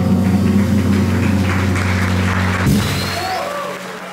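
Jazz quintet holding its final chord while applause breaks in. The chord cuts off under three seconds in, and the clapping fades away.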